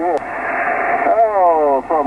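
A distant ham station's voice received on upper sideband on the 17-metre band through a Yaesu FT-857D transceiver's speaker, with the thin, band-limited sound of single-sideband audio. The first second is mostly band hiss, and the speech comes in strongly about a second in.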